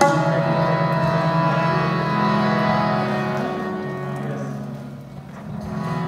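Harmonium playing sustained, held notes that die down about five seconds in and then swell again.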